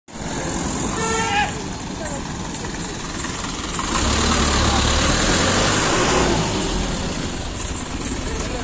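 A police bus's engine running as the bus pulls up close, its low rumble strongest in the middle of the stretch, over steady street noise. A voice calls out briefly about a second in.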